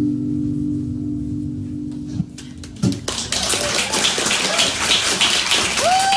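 The acoustic guitars' last chord rings out and dies away, then a small audience breaks into applause about halfway through.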